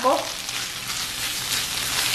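Soy chorizo and diced onions sizzling in hot oil in a frying pan, stirred and broken up with kitchen tongs.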